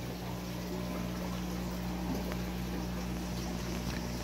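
Pond filtration running: a 3100-gallon-per-hour pump hums steadily while filtered water pours back into the pool.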